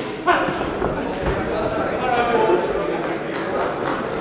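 Untranscribed voices shouting at ringside during a kickboxing bout in a large hall, with a sudden loud shout about a third of a second in.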